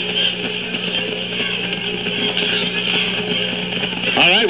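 Murmuring stadium crowd noise over a steady low hum, heard through an old radio broadcast taped off a transistor radio onto cassette.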